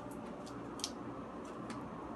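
Quiet room tone with three faint, short clicks spread over the two seconds.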